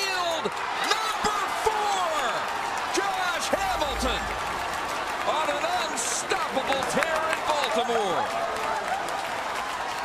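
Ballpark crowd cheering and yelling for a home run, many voices shouting over one another, with scattered claps and knocks.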